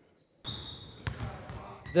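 After a brief silent gap, a basketball bouncing on a hardwood gym floor, with a sharp bounce about a second in and a fainter one after it. A brief high squeak comes just before the first bounce.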